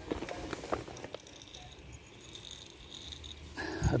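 Dry cat kibble being handled and poured from a jar onto stone paving: a few light clicks and rattles in the first second, then a short rush of pellets spilling near the end.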